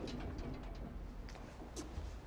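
A pigeon cooing softly, a short low coo early on, with a few faint clicks or scuffs later.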